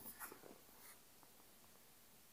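Near silence: quiet room tone, with a few faint, brief scratching sounds in the first second.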